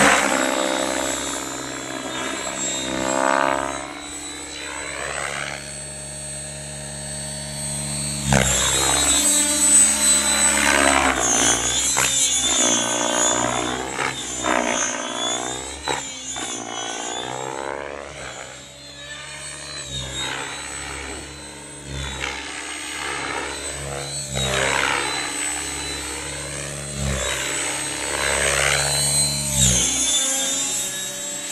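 Electric 700-size radio-controlled helicopter (a 700E) flying: the rotor and motor sound sweeps down and up in pitch again and again as it manoeuvres, over a steady high whine.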